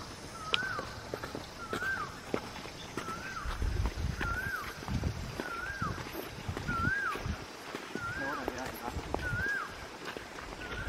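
A bird repeating a short whistled call that rises and then falls, about once a second, over the low thuds of footsteps on a dirt path.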